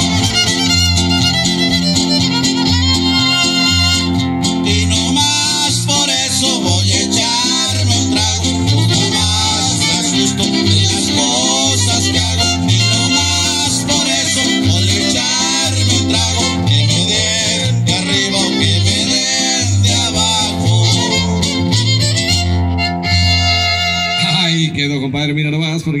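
Huasteco trio playing a huapango live: a fiddle carries the melody over strummed guitars and a steady pulse of low guitar notes. The music gives way near the end, where a man's voice starts.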